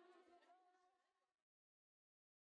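Near silence: a faint tail of the soundtrack fades away about a second and a half in, then total silence.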